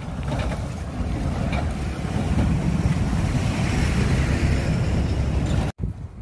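A lorry approaching on the road: a low engine and tyre rumble that grows steadily louder, then cuts off suddenly near the end.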